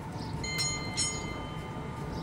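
A small bell rung twice, two bright dings about half a second apart, each ringing on briefly over a steady low street and vehicle noise.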